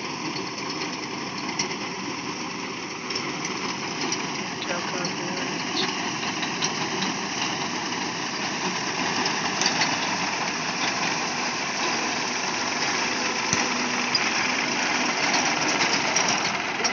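Tractor engine running steadily while its front-mounted reaper binder cuts standing wheat, the cutter bar and conveyor adding a busy clatter to the engine noise. The din is even throughout, a little louder after about three seconds.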